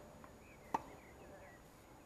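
A tennis ball struck by a racket: one sharp pop about three-quarters of a second in, with a much fainter tick earlier. Birds chirp faintly in the background.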